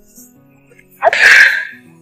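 A woman crying, with one loud, sudden sob about a second in, over soft background music.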